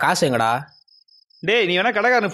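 Two men talking, with a pause of about a second in the middle, over crickets chirping in a steady, rapid high-pitched pulse that is heard plainly in the gap.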